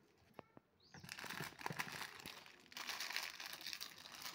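Packaging being handled and crumpled: a few light clicks, then a dense crackle starting about a second in.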